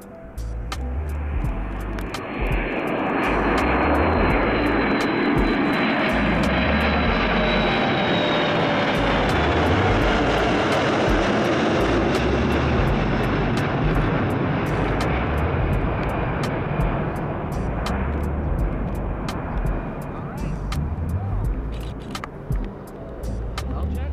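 US Navy E-6B Mercury's four CFM56 turbofan engines on a low pass: the jet noise swells over the first few seconds and peaks with a high whine that slides slightly lower, then slowly fades as the aircraft climbs away.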